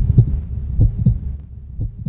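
Heartbeat sound effect: low double thumps, lub-dub, repeating about once a second.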